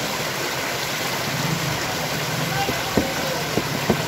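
Feet wading through shallow floodwater, with a steady rushing hiss of water and a low engine hum underneath; a few sharper splashes come near the end.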